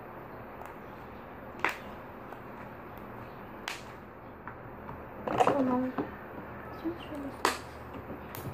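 Slime being kneaded and stretched by hand, with three sharp clicks about two seconds apart, over a steady hiss. A short voice sound comes about five seconds in.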